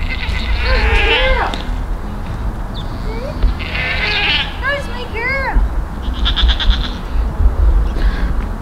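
Goats bleating several times: a couple of calls in the first second and a half, a run of them from about three and a half to five and a half seconds in, and a quavering call around seven seconds.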